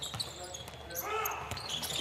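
On-court basketball sounds: a ball bouncing on a hardwood floor and a few sharp knocks, with a voice calling out in the second half.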